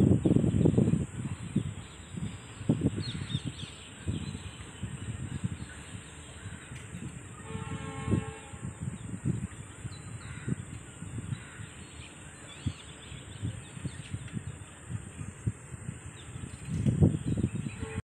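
Outdoor ambience with birds calling here and there, one louder drawn-out call about eight seconds in, over a low gusty rumble that is heaviest in the first second and again near the end.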